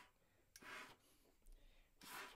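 Near silence: room tone, with one faint short breath a little after half a second in.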